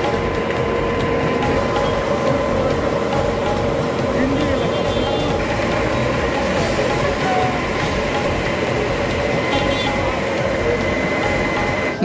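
An engine running steadily with a constant whine, under the voices of a crowd.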